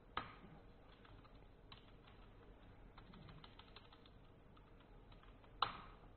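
Computer keyboard keystrokes, faint: a sharp key press just after the start, scattered clicks, a quick run of typing around the middle, and another sharp key press near the end, as a shell command is typed and entered.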